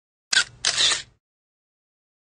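Short logo sound effect: a sharp click, then about a third of a second later a noisy burst lasting roughly half a second, like a camera shutter, and nothing after it.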